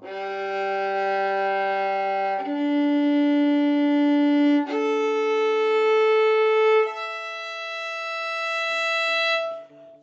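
Violin's four open strings bowed in turn, G, D, A and E, each a long steady note of a little over two seconds, stepping up in pitch, with the bow hair freshly tightened.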